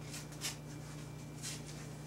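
Faint rustling and brushing of a fabric light cover being handled and pulled around the rim of a large Fresnel lens: a few short soft scrapes, the clearest about half a second in, over a steady low hum.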